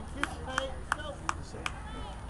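A person clapping their hands five times in a steady rhythm, a little under three claps a second, with faint distant voices behind.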